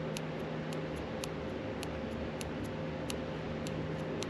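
Light ticks, about two a second, from a finger tapping the arrow button on a Holley Sniper EFI handheld touchscreen, stepping the engine displacement setting up one value at a time. They sit over a steady background hum.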